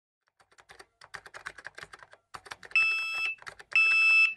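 Typing on a laptop keyboard in quick clicks, then two electronic alert beeps, each a steady high tone about half a second long, one after the other. The beeps are a high blood sugar alarm.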